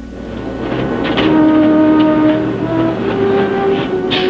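Dramatic background music score: held notes that swell in over the first second, with the melody stepping up in pitch near the end.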